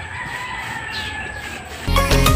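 A rooster crowing: one long held call that slides slowly down in pitch and fades near the end. Music comes in just as it ends.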